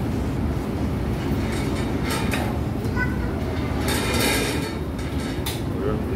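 Steady low rumbling background noise in a small restaurant, with a few brief, sharp higher sounds scattered through it.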